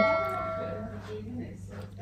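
A bell-like notification chime from a subscribe-button animation, ringing out and fading away over about the first second.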